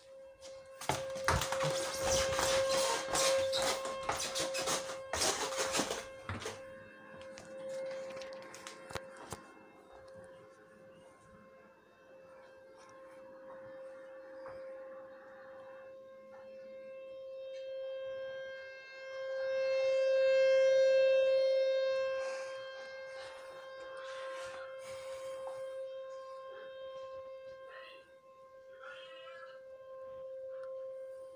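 Outdoor tornado warning siren sounding one steady tone during its monthly test, heard muffled from inside a house. Its level swells and fades, loudest about two-thirds of the way in. A loud rush of rustling noise covers the first several seconds.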